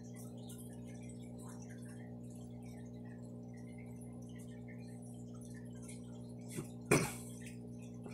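Low, steady electrical hum of running aquarium equipment, with faint scattered ticks and drips of water over it. Near the end there is a small click and then a sharp knock, the loudest sound.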